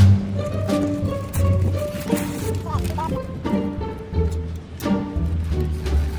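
Background music: a track with deep bass notes and a beat.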